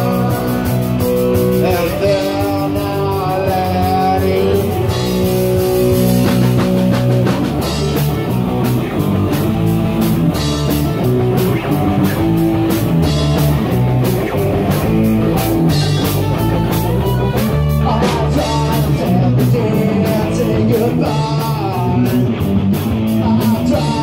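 Punk rock band playing live: electric guitar, bass guitar and drum kit, loud and steady, the drum hits growing busier about a third of the way in.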